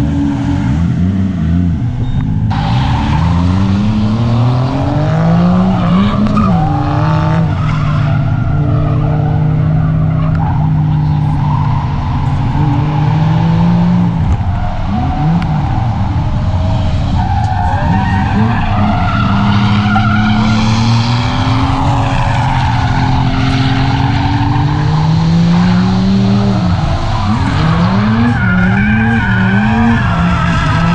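A drifting Toyota Mark II sedan's engine revving up and down hard through the corners, with tyres squealing as the car slides. The engine pitch climbs at the start and then rises and falls repeatedly, with quick blips near the end.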